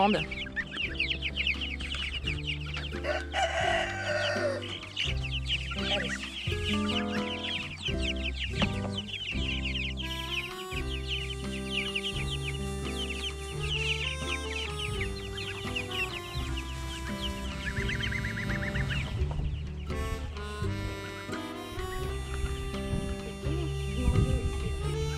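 A flock of young broiler chicks peeping constantly, over background music with a steady bass line.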